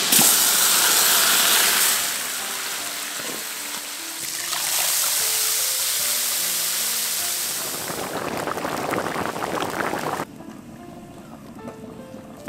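Pieces of fish going into a hot wok of soy-sauce braising liquid and sizzling loudly, then water poured in over them from about four and a half seconds, followed by bubbling that dies down near the end. Soft background music runs underneath.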